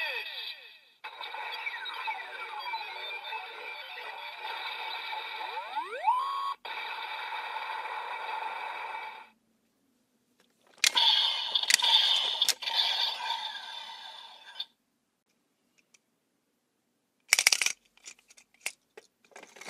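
Bandai DX Evol Driver toy belt playing electronic sound effects through its small speaker: a steady buzzing tone with a falling sweep and then a rising one for about eight seconds, a pause, then a shorter effect with a few sharp clicks. Near the end come plastic clicks as a hand pulls the Full Bottles out of the belt.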